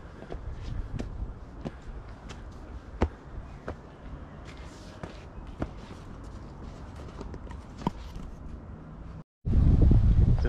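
Footsteps on a dirt forest trail with leaf litter: irregular scuffs and crunches of walking uphill, over a low steady rumble. The sound drops out abruptly for a moment shortly before the end.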